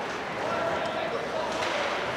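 Ice hockey rink ambience: a steady hiss of skating and play on the ice in the arena, with a faint held tone about half a second in.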